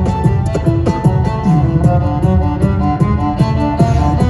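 A cello bowed in a flowing run of notes over a steady beat of deep bass pulses and quick hi-hat-like ticks, played live in a concert hall.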